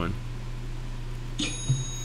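A short, high electronic notification chime rings about one and a half seconds in, over a steady low electrical hum.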